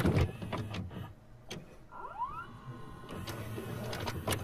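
Quiet VCR tape-deck sound effect: scattered mechanical clicks, a short motor whir rising in pitch about two seconds in, then a faint steady hum.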